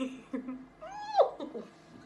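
A woman giggling, then a short high-pitched squeal that rises and falls in pitch about a second in.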